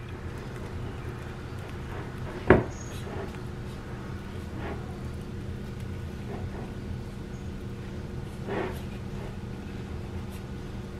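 Wooden spoon pressing and spreading sticky marshmallow-coated rice cereal in a ceramic baking dish, with soft, faint scraping. One sharp knock comes about two and a half seconds in, over a steady low hum.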